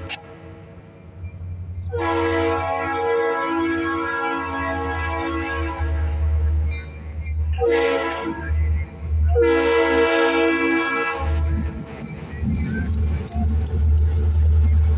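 Buffalo & Pittsburgh diesel locomotive air horn sounding the grade-crossing signal: a long blast, a short one, then a final long blast as the train nears the crossing. After that, the deep rumble of the locomotives grows loud as they roll through the crossing, with a run of clicks near the end.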